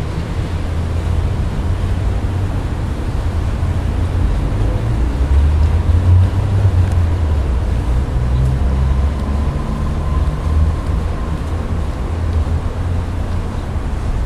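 A steady low rumble that swells and fades, loudest a third of the way in, with a faint thin tone near the middle.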